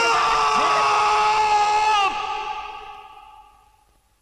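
A man's long drawn-out shout, held on one steady pitch for about two seconds, then fading away.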